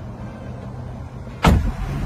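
Jeep Gladiator's 3.6-litre V6 running as a low, steady rumble, with one sudden loud thump about one and a half seconds in.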